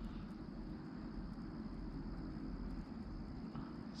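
Quiet outdoor ambience on a still pond: a steady low background noise with no distinct events.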